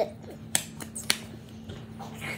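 Two sharp finger snaps about half a second apart, with a fainter click between them.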